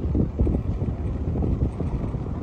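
Strong wind gusting against the microphone: a low, uneven buffeting.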